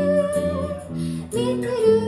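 A live band: a woman singing long held notes over strummed acoustic guitar and a second guitar, amplified through the stage PA. A new sung note swells in about halfway through.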